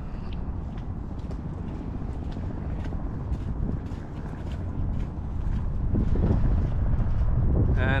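Wind buffeting the camera's microphone as a low, steady rumble that grows louder in the second half, with faint footsteps of a person walking on a paved path.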